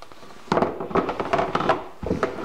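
A quick cluster of knocks and thumps as an American Girl doll body with hard vinyl arms and legs is set into an empty plastic basin, its limbs knocking against the tub.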